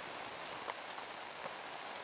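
Faint, steady outdoor hiss of background noise, with a couple of soft ticks.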